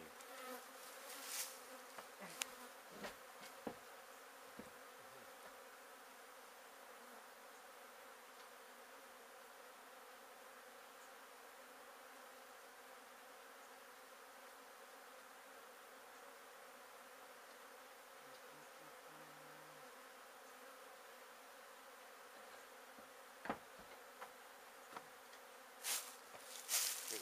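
Faint, steady buzzing of a mass of honey bees flying around a colony opened up for removal. A few short knocks come in the first few seconds and again near the end.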